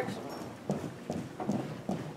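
Footsteps of a color guard marking time in step, a steady beat of footfalls about two a second.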